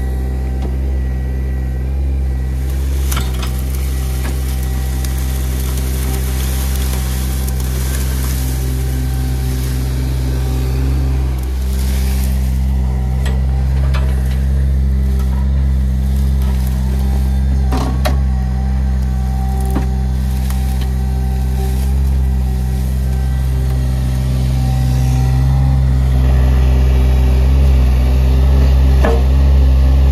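Sany mini excavator's diesel engine running steadily under load as its bucket works through brambles and scrub, growing a little louder near the end. A few sharp cracks of snapping stems and branches sound over it.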